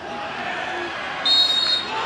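Referee's whistle, one steady blast of about half a second a little over a second in, signalling a foul and a free kick, over the murmur of a stadium crowd.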